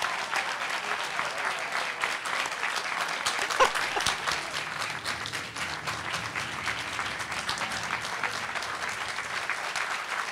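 Audience applauding continuously in a large room, with a short voice calling out about three and a half seconds in.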